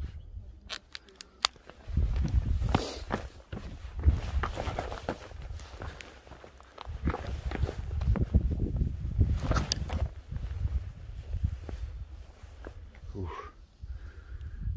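Footsteps on loose stony gravel and limestone rock, shoes crunching and scraping in an uneven walking rhythm, with a few sharp clicks in the first two seconds.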